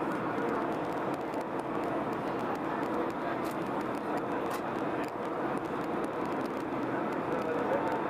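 Downtown Line MRT train running through a tunnel, heard from inside the car: a steady noise of wheels on rails and tunnel rumble at an even level, with faint scattered clicks.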